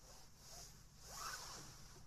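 Car seatbelt being pulled out of its retractor and drawn across a padded nylon jacket: a faint rustling swish that swells about a second in.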